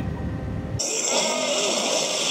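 Low rumble of the crop sprayer's engine heard in the cab, cut off abruptly under a second in and replaced by a loud hissing rush of a cartoon fire-breathing sound effect, with wavering tones in it.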